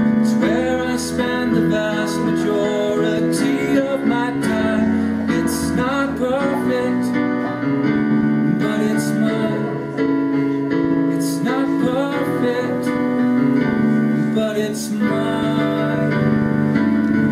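Digital keyboard played with a piano sound, chords held under a man's singing voice. The singing comes in two phrases with a short break around the middle.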